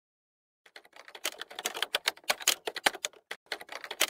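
Keyboard typing sound effect: a run of rapid, uneven clicks that starts under a second in, with a brief pause about three seconds in.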